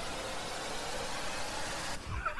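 A steady, even hiss of noise at a moderate level, with no speech or music.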